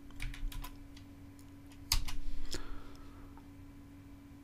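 Computer keyboard keystrokes as a dimension value is typed into CAD software: a few light key clicks near the start, then a louder run of clatter about two seconds in. A faint steady hum sits underneath.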